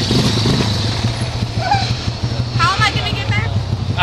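Quad-bike (ATV) engine idling steadily, with a short burst of a high voice calling out near the end.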